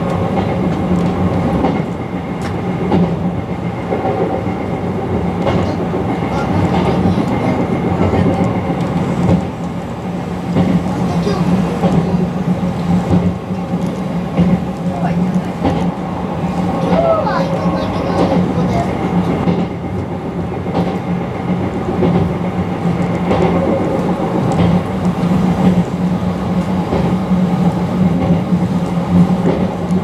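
Izukyu Resort 21 electric train running at speed, heard from the front cab: a steady running hum with scattered clicks of the wheels over rail joints.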